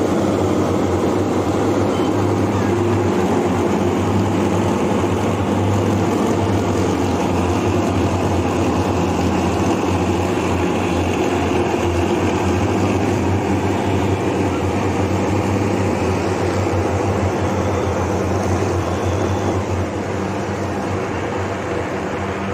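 Truck-mounted disinfectant fogging machine running steadily, a loud continuous noise with a low hum, a little quieter in the last few seconds.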